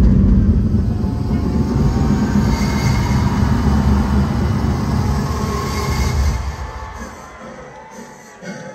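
A deep bass rumble from a concert sound system. It starts suddenly, holds for about six seconds and fades out near the end. It comes as a pause in the emergency-broadcast intro tape, with crowd noise beneath it.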